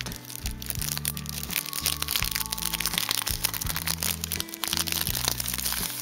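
Clear plastic sleeve crinkling and crackling as sticker cards are pulled out of it, over background music with held low notes.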